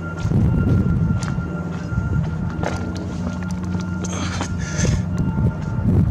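A steady low mechanical hum, like an engine or generator running nearby, with a faint high steady tone over it. Scattered light knocks and brief rustles come and go across it.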